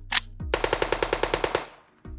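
Edited-in machine-gun sound effect: one sharp shot, then a rapid burst of about a dozen shots a second lasting about a second before fading out.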